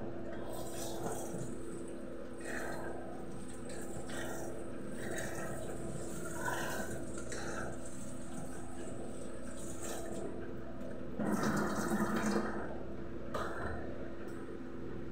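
Water from a kitchen tap running in short spells, loudest for about a second and a half near the end, over a steady low hum.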